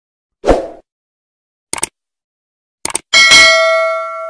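Subscribe-button animation sound effects: a short burst, two quick double clicks, then a bright notification-bell ding that rings out and fades, the loudest and longest sound.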